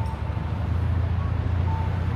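Steady low rumble of road traffic on a city street, with a couple of faint short beeps.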